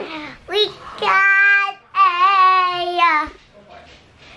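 A young girl's voice singing two long held notes, the second longer with a slight wobble, after a short call.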